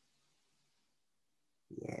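Near silence with faint room tone; a man's voice starts to speak about a second and a half in.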